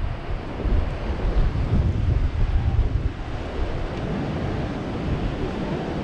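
Wind buffeting the microphone in an uneven low rumble, over the constant wash of rough sea surf breaking.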